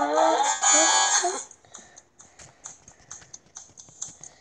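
Audio from an animated children's Bible story app: a pitched sound, voice-like or melodic, with shifting pitch for about the first second and a half, then faint scattered ticks.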